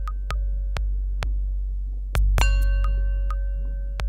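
Modular synthesizer music: a loud deep bass drone under sharp clicks about every half second, with short high pings and a held mid-pitched tone. A louder, brighter hit a little past two seconds in starts the tone again.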